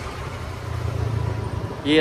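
A scooter's small engine running steadily as it rolls slowly along, a low hum that grows a little louder after the first half second.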